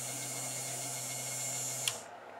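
Small DC drive motor of an Allen Bradley 855BM rotating warning beacon running at high speed with a steady whirring hum, then a click near the end as the controller's relay times out and cuts it off. It shuts down because the optical speed sensor is blocked.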